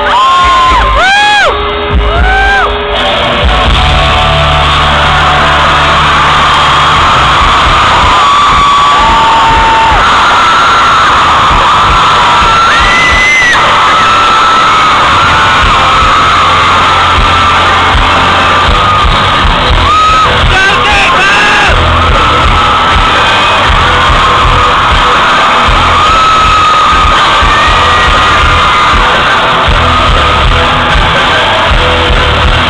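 Live concert heard from the audience, recorded close to overload: amplified music with low bass notes under a crowd screaming and cheering throughout. Several high screams rise and fall in pitch in the first few seconds and again later.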